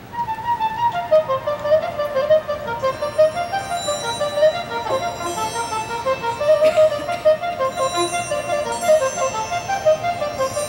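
Marching band music: a fast line of short, clearly pitched notes starts suddenly after a quieter moment and runs on, with higher lines layered above it.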